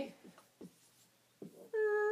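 Near silence, then near the end a short, steady, high-pitched voice-like sound held on one note for about half a second.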